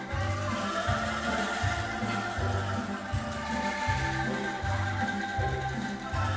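A group of angklung, tuned bamboo rattles, shaken together in sustained tremolo chords, over a low bass part that changes note about twice a second.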